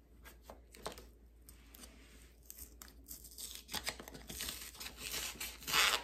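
Cardboard shipping box being torn open by hand, its sealed end resisting. A few small clicks and rustles come first, then a tearing sound builds over the last two seconds, loudest just before the end.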